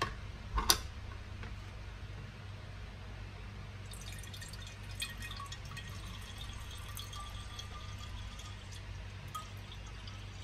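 A short knock under a second in, as the plastic citrus juicer is set down in a ceramic bowl. From about four seconds in, freshly squeezed citrus juice is poured from a juicing cup into a swing-top glass bottle, trickling and splashing steadily as the bottle fills.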